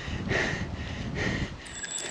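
A runner breathing hard in about three heavy, breathy gasps, out of breath straight after finishing a hard ten-minute speed rep.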